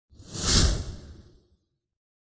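A whoosh sound effect for an animated logo intro: a single rushing swell that peaks about half a second in and fades away by about a second and a half.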